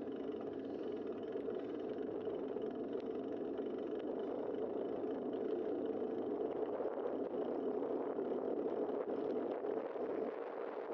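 Steady rush of wind on a bike-mounted camera's microphone, mixed with the tyre noise of a bicycle rolling along a paved road.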